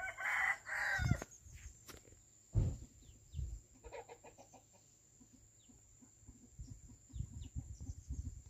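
A rooster crows once at the start, a call about a second long. Footsteps on a dirt path follow, with a few quieter bird calls about four seconds in.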